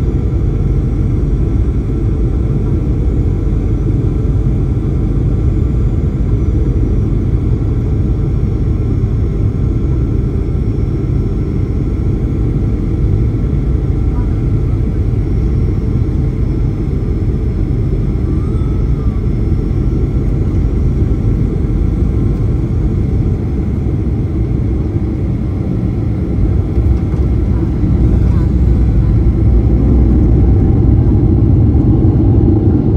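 Steady low rumble of a jet airliner's cabin on final approach, with engine and airflow noise heard from a window seat. It grows louder near the end as the plane comes down over the runway.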